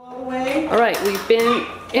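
Voices in a toddler classroom, with a woman starting to speak near the end, and a few light clicks and clatters of plastic toys being handled.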